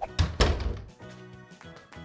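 Door-slam sound effect: a heavy thunk about a quarter second in, over soft background music.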